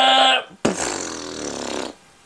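A man's long held shout of 'yeah' breaks off just under half a second in. After a brief gap, a second, buzzier sound slides down in pitch and cuts off suddenly near the end.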